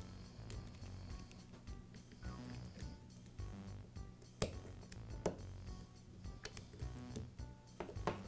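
Soft background music, with two small sharp clicks about halfway through from a metal pick tool working the brush springs off the carbon brushes of a power-tool motor.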